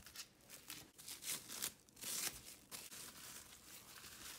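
Clear plastic cling wrap faintly crinkling and rustling in irregular crackles as it is pulled back and bunched in the hand.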